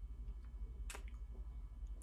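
Quiet room tone with a steady low hum, and one faint sharp click about a second in.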